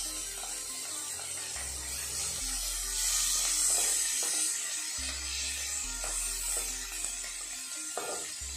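Background music with a stepping bass line over a faint sizzle of dried fish frying in oil in a steel wok.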